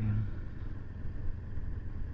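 Steady low rumble of a Bajaj Pulsar RS200 motorcycle riding slowly along a highway, with wind on the microphone. The last syllable of a spoken word fades out at the very start.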